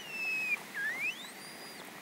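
Red panda cub squealing in protest with thin, high whistling calls. A short call falls slightly in pitch and stops about a quarter of the way in, then a longer call slides steeply upward over about a second.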